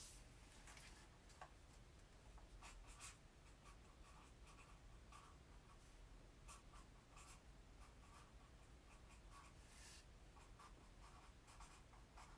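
Faint scratching of drawing on paper, in short irregular strokes.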